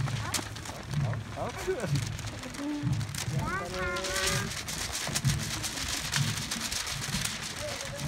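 Marathon runners' footsteps on the road, with a steady low thud a little faster than once a second from the stride of the runner carrying the microphone and many lighter footfalls around it. Spectators shout to the runners, loudest about halfway through.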